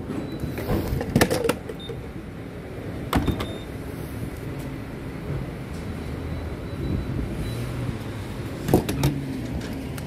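Fuel pump being handled: a few sharp clicks and knocks about a second in, again at about three seconds and near the end, as the nozzle is taken up and set into the car's filler neck, over a steady low hum.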